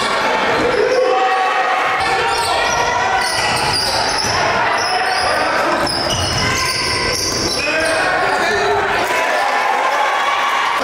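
Basketball being dribbled on a hardwood gym floor, with a steady mix of player and spectator voices, all echoing in a large gym.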